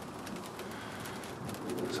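A pigeon cooing faintly over a steady hiss.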